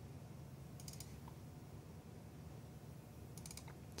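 Faint computer keyboard keystrokes: two quick clusters of clicks, about a second in and near the end, over a low steady hum.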